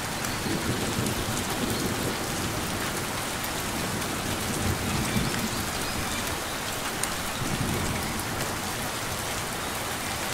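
Steady rain falling on foliage, an even hiss of drops with a few brief low swells.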